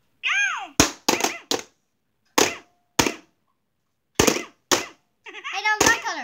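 Plastic mallets whacking the light-up moles of an electronic whack-a-mole toy: a run of sharp hits at uneven intervals, some in quick succession.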